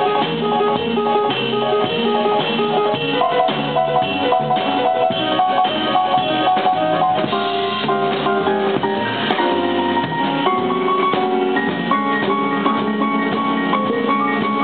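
Live jazz played by a small group: piano, plucked double bass and drum kit, with many notes moving together at a steady level.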